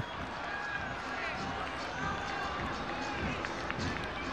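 Football stadium ambience: a steady murmur from the crowd, with faint distant shouts from players and spectators.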